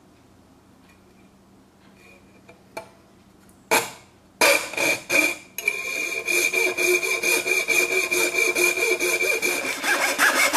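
Jeweler's saw with a very fine blade cutting copper-clad circuit board held in a vise. After a few near-quiet seconds and a couple of single strokes, sawing starts about four seconds in and settles into rapid, even strokes, several a second, with a steady high ring under them. These are the first strokes of the cut, where getting the groove going is touchy.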